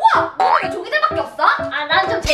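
Cute, bouncy background music with a comic cartoon-style sound effect, and a voice exclaiming "wow" in delight.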